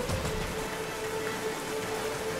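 Soft background music holding one sustained note over a steady, even hiss.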